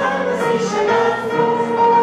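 A group of voices singing a show tune together as a chorus, holding long notes, with musical accompaniment.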